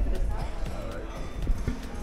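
Indistinct voices of a group in a hotel lobby, with footsteps on a hard floor and a knock about one and a half seconds in, over a low rumble.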